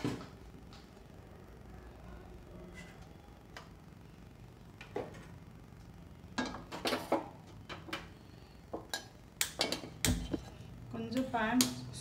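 Stainless-steel kadai being set down on a gas stove's metal pan supports: a series of sharp metal clanks and knocks in the second half.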